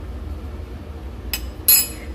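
Two short clinks of metal kitchenware at a large stainless steel pot, about a third of a second apart near the end, the second louder, over a low steady hum.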